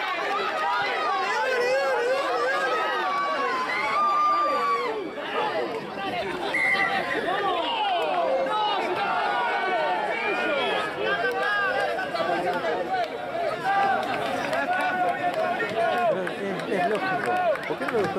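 Overlapping voices of several spectators talking and calling out at once, a steady chatter in which no single speaker stands out.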